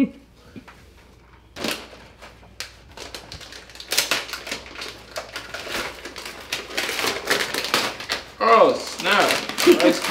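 Plastic gift bag and packaging crinkling and rustling as it is handled and opened, a fast run of small crackles starting about one and a half seconds in.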